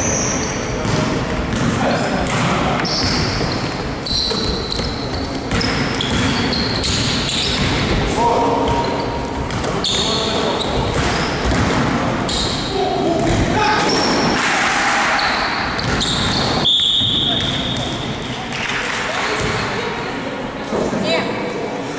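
A basketball game on an indoor court: the ball bouncing on the wooden floor and sneakers squeaking. About three-quarters of the way through comes a short, steady whistle blast, typical of a referee stopping play.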